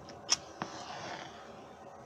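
A sharp click about a third of a second in, then a soft, breathy exhale from a tobacco-pipe smoker.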